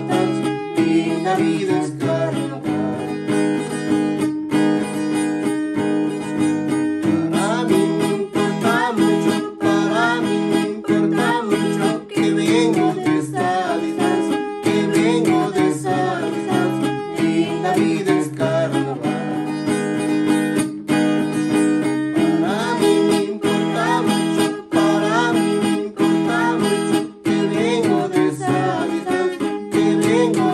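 Cutaway acoustic guitar strummed in a steady, even rhythm with voices singing along, a carnavalito.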